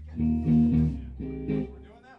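Amplified electric bass holding a low note that stops near the end, while an electric guitar plays two short bursts of chords over it, the first about half a second in and the second about a second later.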